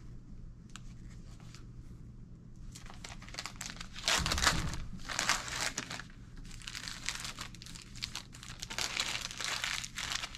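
Paper wrapper of a sterile glove packet being opened and unfolded, crinkling and rustling in irregular bursts that grow busier after about three seconds, loudest about four seconds in with a low bump.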